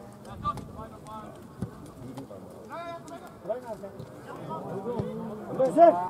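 Voices of players and spectators calling out across a football pitch, with a couple of brief knocks, and louder shouts rising near the end.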